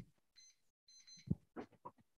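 Two short, faint electronic beeps, each a pair of high tones, about half a second apart, followed by brief faint voice fragments.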